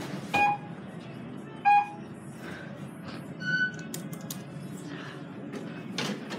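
Electronic signal tones inside a Dover traction elevator car: two short beeps at the same pitch about a second apart, then a higher, longer tone about three and a half seconds in, over the steady low hum of the car.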